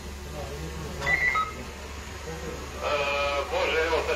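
Two short electronic beeps, a high one and then a lower one, about a second in, followed by a person talking near the end, over a steady low hum.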